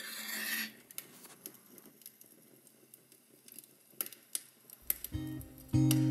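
A match flaring with a hiss for under a second after being struck, followed by faint scattered clicks and rustles. An acoustic guitar begins plucking notes about five seconds in.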